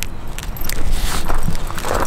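Light metallic jingling and clinking with footsteps crunching on gravel, growing louder about halfway through.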